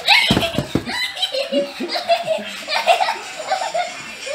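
High-pitched voices laughing and chattering, with a few low thumps of the camera being handled about half a second in.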